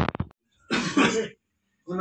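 A few quick clicks, then a person coughs once, loudly, about a second in.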